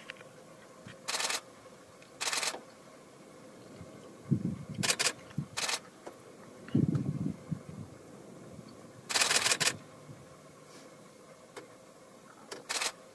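Several short runs of rapid camera shutter clicks, a few tenths of a second each, with the longest run about nine seconds in; two low thumps come between them.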